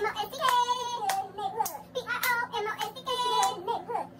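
A high voice singing a short jingle in long, gliding notes, over handclaps keeping a steady beat about twice a second.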